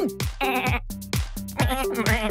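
Upbeat dance music with a steady kick-drum beat. Near the end, a cartoon sheep bleats over it with a wobbling pitch.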